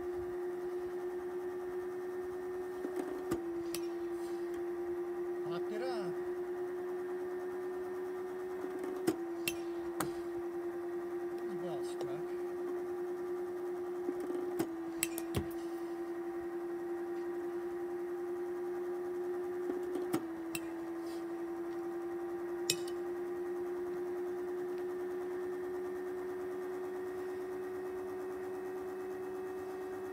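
Pitching machine motor humming steadily, its pitch dipping briefly four times as the wheel throws a ball. Each throw is followed by sharp clicks of the metal bat striking the ball.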